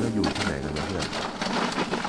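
A man speaking Thai, asking where they are.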